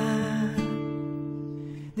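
Song: a held sung note ends about half a second in, then a strummed acoustic guitar chord rings and slowly fades.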